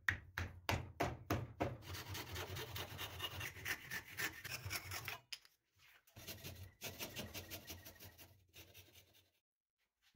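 Hand work on a pine rocker clamped in a bench vise: about eight quick taps on a thin wooden spline in a mitred corner joint, then two spells of steady rasping, rubbing strokes against the wood.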